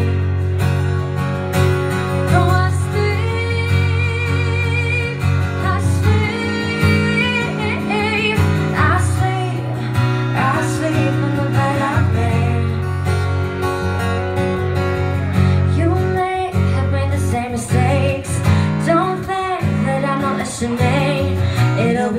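Live acoustic pop song: a woman singing, her held notes wavering with vibrato, over an acoustic guitar, both amplified through the club's sound system.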